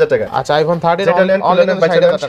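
Speech only: a man talking continuously in a fast sales patter.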